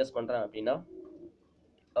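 The last of a man's speech, then a pigeon's low, soft coo about a second in, followed by near silence.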